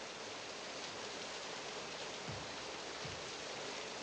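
Heavy rain falling in a steady hiss, with a couple of low thuds about halfway through.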